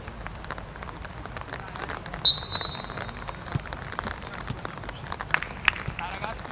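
Referee's whistle: one short, shrill blast a little over two seconds in, over the steady open-air noise of the pitch. A few sharp knocks follow near the end.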